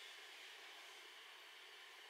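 Near silence: faint steady room tone and microphone hiss.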